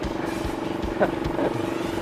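The small motorcycle engine of a saleng sidecar cart idling steadily, with regular low pulses.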